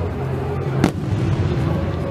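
A firework shell bursting in the sky, heard as one sharp bang about a second in.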